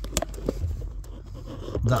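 Faint rustling and a few light clicks of a hand and camera moving among wiring looms and plastic trim under a car's dashboard.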